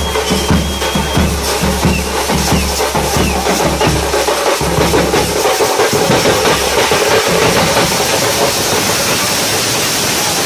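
Large drums are beaten in a steady, driving rhythm over a noisy crowd. About five seconds in the drumming drops away and a loud crowd roar of shouting and cheering fills the rest.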